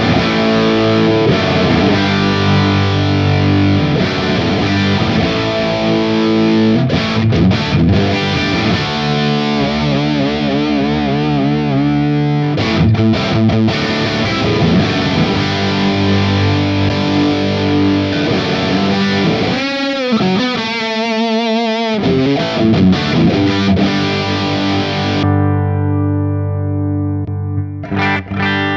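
Distorted electric guitar riffing and lead playing from a Charvel Pro-Mod DK24 with Seymour Duncan Full Shred and Alnico Pro II pickups. It runs through the Seymour Duncan Diamondhead distortion pedal, used as a preamp straight into a Greenback 4x12 cab simulation, with reverb and delay added. Wavering vibrato notes come about ten and twenty seconds in, and the playing ends on a held chord that rings out near the end.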